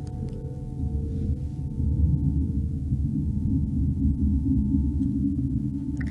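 Live electronic ambient score played from a laptop through speakers: a dense low drone with a few steady held tones above it.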